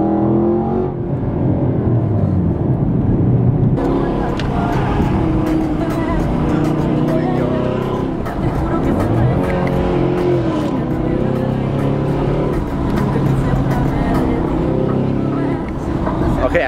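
Chevrolet Camaro SS's 6.2-litre V8 heard from inside the cabin under hard driving, its note climbing and dropping repeatedly as it accelerates and shifts gears.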